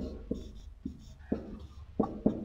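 Stylus tapping and clicking on a pen tablet while writing by hand: a few short, irregular clicks, roughly one every half second.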